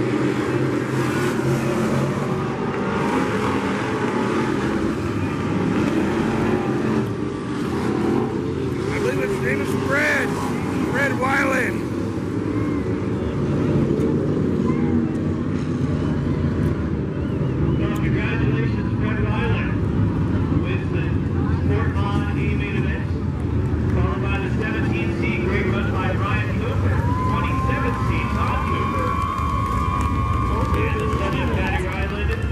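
Sport modified race cars running laps on a dirt oval, their engines a steady drone, with people's voices over it at times.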